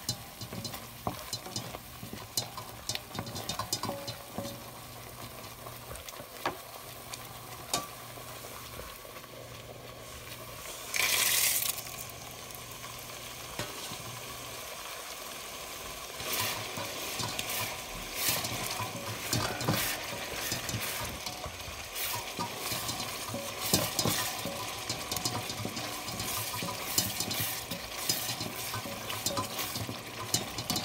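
Wooden spatula stirring and scraping thick tamarind paste as it bubbles in a metal pan. About eleven seconds in there is a brief loud sizzle as the tempering of fried dals, peanuts, red chillies and curry leaves in sesame oil goes in, and the stirring then carries on with frequent scrapes and clicks.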